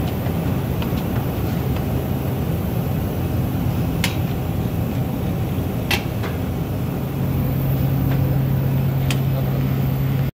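A KBA Rapida 74 sheetfed offset printing press with four colour units and a coating unit running: a steady mechanical rumble with a low hum that grows louder about seven seconds in. A few sharp clicks come through, near the middle and near the end.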